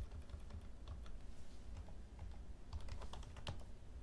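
Computer keyboard typing: scattered keystrokes as a placeholder is deleted and a password typed in a text editor, over a low steady hum.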